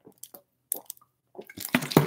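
A man gulping a drink from a plastic bottle: several short, separate swallows, growing louder near the end as he finishes and lowers the bottle.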